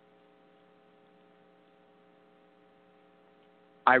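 Faint, steady electrical mains hum made of several steady tones, with nothing else sounding; a voice starts right at the end.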